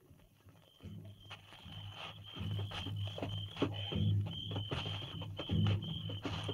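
Radio-drama sound effects fading in after a near-silent first second: crickets chirping steadily, with soft repeated clops of horses led at a walk, over quiet low background music.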